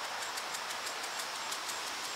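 Steady outdoor background hiss, with a faint, fast, high ticking running evenly through it.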